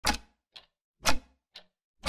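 Clock ticking: a loud tick once a second, each followed about half a second later by a fainter tock.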